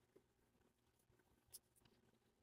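Near silence, with two faint ticks, the second about one and a half seconds in.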